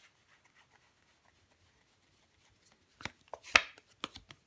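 Tarot card being handled over a wooden table: faint ticks, then a few sharp clicks from about three seconds in, the loudest a snap about three and a half seconds in followed by a brief papery rustle, as a card is drawn from the deck and turned.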